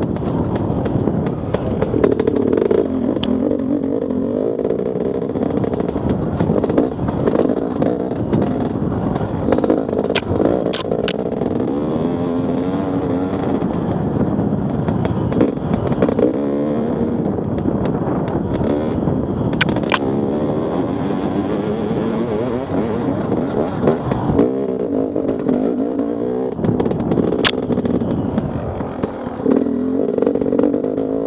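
Enduro motorcycle engine running under load on a dirt trail, its pitch rising and falling constantly with the throttle. Clatter from the bike runs throughout, with a few sharp clicks.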